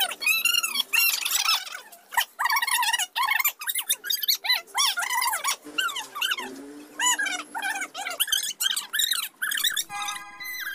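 High-pitched, squeaky voice-like cries in quick rising-and-falling syllables, one after another, too high for ordinary speech.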